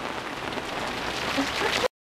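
Steady heavy rain falling, an even hiss, which cuts out abruptly just before the end.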